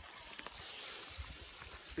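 Water poured from a bag onto the still-hot stones and embers of a campfire ring, hissing as it turns to steam. The hiss starts about half a second in and holds steady.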